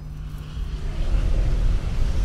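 A deep, noisy rumble swelling steadily louder, heaviest in the bass with a rising hiss above it: a sound-design build of the kind used to lead into a hard cut.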